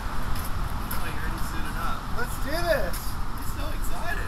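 A man's voice calling out briefly in excited greeting, with a rising-and-falling exclamation a little past halfway, over a steady low rumble of outdoor background noise.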